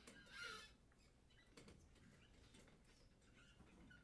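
Near silence in a large room, broken by faint rustling and scattered knocks of chairs as seated people settle in; a brief rustle about half a second in is the loudest sound.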